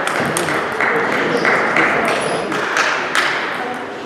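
Table tennis ball clicking off rubber-covered bats and the table in a rally, two to three sharp clicks a second, over a steady background of voices.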